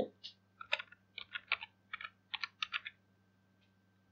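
Faint typing on a computer keyboard: about a dozen quick keystrokes over three seconds, then it stops.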